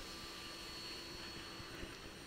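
Quiet room tone: a steady faint hiss with a thin electrical hum, and one small click near the end.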